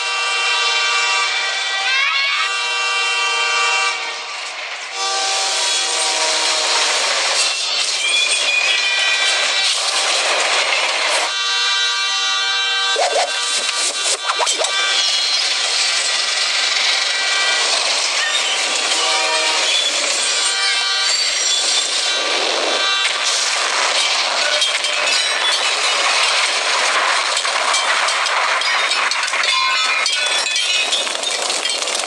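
Film soundtrack of a diesel train: long held locomotive horn blasts over the steady noise of the train running, mixed with music.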